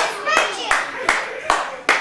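Hands clapping a steady beat, about six claps at roughly two and a half a second.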